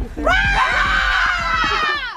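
A group of girls screaming together: one long shriek of several overlapping voices that starts a moment in and cuts off abruptly at the end, over background music with a steady beat.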